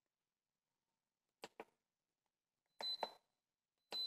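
Button beeps from an OPOS CookBot V3 electric pressure cooker's touch control panel as its settings are keyed in. Two faint light clicks come about a second and a half in, then two short high beeps about a second apart near the end.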